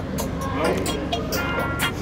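Background music with a quick, steady percussion beat and a held melody.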